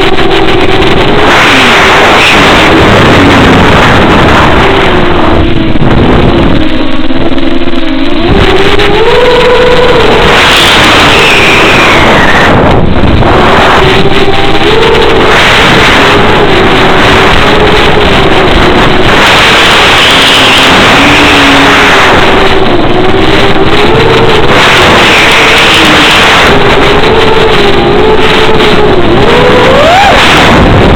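Electric motor and propeller of an FPV model plane, picked up by its onboard camera microphone: a loud, steady whine whose pitch rises and falls with throttle, dipping about a quarter of the way in and climbing again shortly after, with rushing noise over it.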